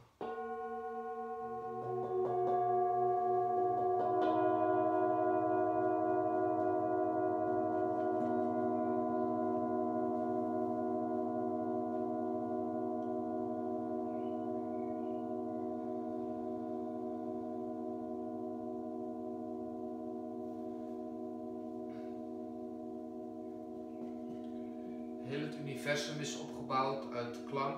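Metal singing bowls struck with a mallet several times in the first few seconds, then ringing on together as a long, slowly fading chord of several pitches with a gentle wavering beat.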